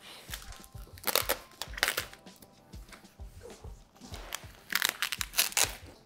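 A large plastic protective bag crinkling and rustling as it is pulled off a big flat-screen TV, in irregular bursts, loudest about a second in and again near five seconds in.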